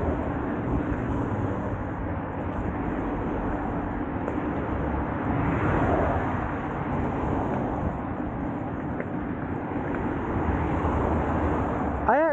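Steady wind rush on the microphone with the rumble of an electric unicycle's tyre rolling over a dirt and gravel track.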